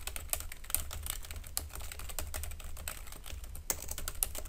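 Fast typing on a computer keyboard: a quick, uneven run of key clicks with no pause.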